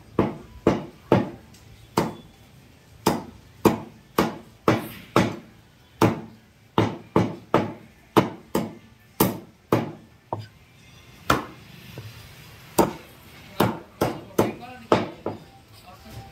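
A cleaver chopping skinned chicken into small curry pieces on a wooden log chopping block: sharp, irregular chops about two a second, with a short pause about two-thirds of the way in.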